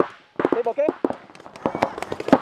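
Paintball markers firing: a rapid, irregular string of sharp pops, with a brief shout partway through.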